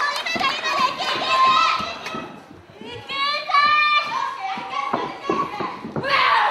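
High-pitched voices shouting and calling out in a wrestling hall. A short lull comes about halfway, then one long drawn-out yell.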